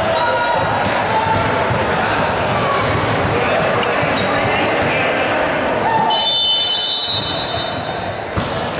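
Indistinct voices of players and spectators echoing in a gymnasium, with a ball bouncing repeatedly on the hardwood floor. A short high squeal near the end.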